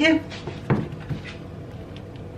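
A single sharp knock of kitchenware set down on the counter, with a brief ring, about a third of the way in, then quiet kitchen room tone with a faint steady hum.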